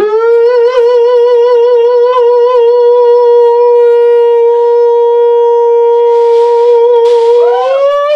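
A man singing one long, high held note on the word 'blue' for about seven and a half seconds, wavering at first and then steady, bending up in pitch near the end.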